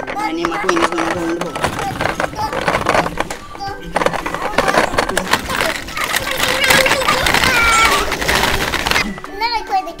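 Plastic ball-pit balls clattering and rattling as a toy car is pushed through them, with a child's voice making sounds over it.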